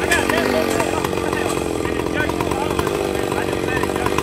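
Chainsaw engine running steadily without cutting, its note dropping a little in the first second and then holding, with people talking nearby.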